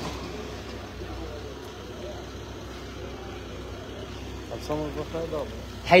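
Steady low hum of an idling police van engine, with people's voices near the end.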